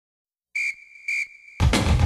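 Two short blasts on a sports whistle, then loud drum-heavy music starts about a second and a half in.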